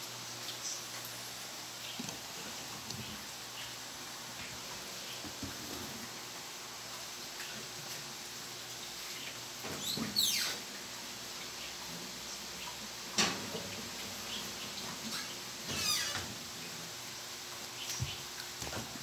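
Metal baking pan going into a gas oven: a scraping squeak about ten seconds in as it slides onto the rack, a sharp knock a few seconds later, and another scraping squeak near the end, over a steady low hiss.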